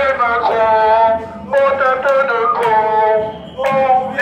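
Protesters chanting in unison with long, drawn-out sung syllables, echoing in a tiled metro stairway, with two short breaks between phrases.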